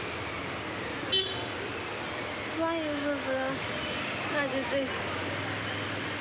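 Steady road-traffic noise with a short, sharp horn toot about a second in.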